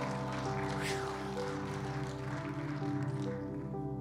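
Soft keyboard music playing slow, sustained chords.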